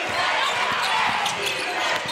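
A basketball being dribbled on a hardwood court, with steady arena crowd noise underneath.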